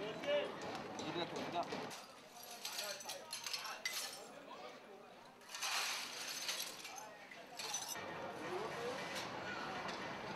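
Broken glass and debris clinking as it is cleared up, with a brief rush of noise about six seconds in and people talking in the background.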